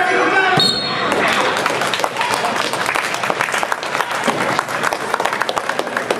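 Spectators shouting, then about half a second in a sharp slap and a short high whistle as a high school wrestling match ends in a pin, followed by scattered clapping of many quick, irregular claps.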